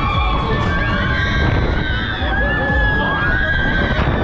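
Riders screaming on a Technical Park Heavy Rotation thrill ride, one long scream held from about a second in to near the end, over a loud low rumble of wind and ride noise on the microphone, with ride music underneath.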